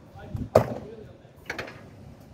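A semi-truck's cab door slammed shut, one sharp bang about half a second in, followed by a lighter knock about a second later.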